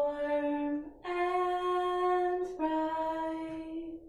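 A woman singing slow, long held notes without words, the pitch stepping up after about a second and then slightly down again.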